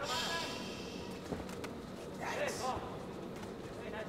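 Kickboxing arena ambience: faint voices calling out from around the ring, with a couple of short sharp knocks about a second and a half in.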